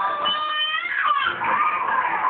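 A single high-pitched, drawn-out vocal call lasting under a second that bends down in pitch at its end, cat-like in character.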